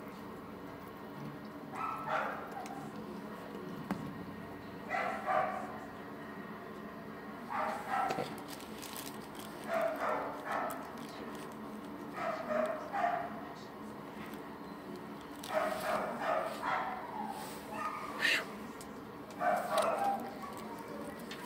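A dog barking in short bouts, a bark or a quick pair about every two to three seconds, over a steady low hum.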